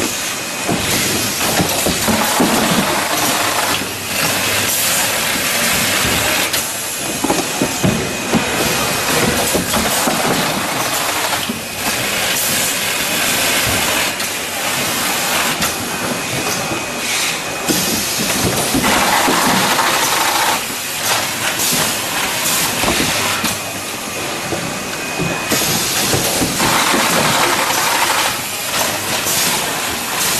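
Automatic carton erector and case sealer running: continuous mechanical clatter with frequent clicks and knocks, over a steady hiss of air from the pneumatic parts.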